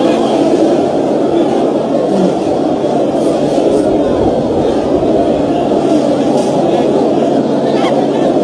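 Steady stadium crowd noise: many voices chattering and calling at once, with no single voice standing out.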